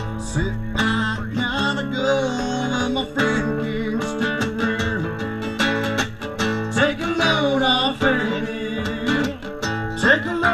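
Live band music led by a strummed acoustic guitar, with some singing.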